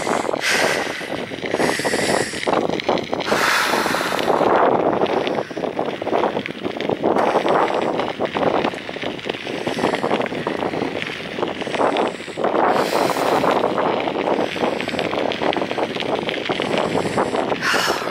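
Strong wind rushing and buffeting over the microphone, a loud, ragged noise that swells twice in stronger gusts.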